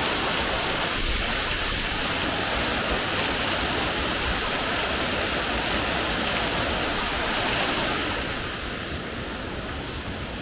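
Waterfall, a gentle flow dropping from a great height onto rocks, giving a steady rush of falling water. It drops in level about eight seconds in.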